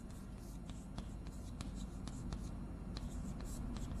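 Chalk writing on a blackboard: a run of quick taps and short scratchy strokes as characters are written.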